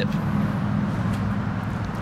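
A motor vehicle engine running steadily, a low, even hum with no revving.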